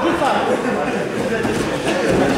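Men's voices calling out and talking over one another, with no other clear sound standing out.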